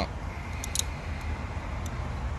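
A few faint, short clicks of a plastic fuse puller being handled, over a steady low background rumble.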